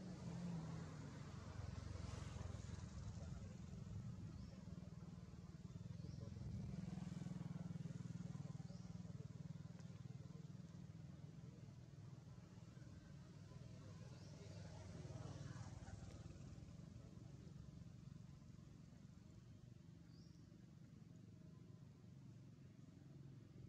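Faint low rumble of distant vehicle traffic, swelling and fading a few times, with a few faint short high chirps.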